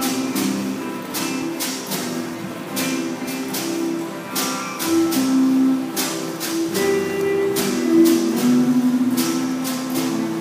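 Live jam-session band music: an instrumental passage led by guitar over a steady beat of about two strokes a second, with no singing.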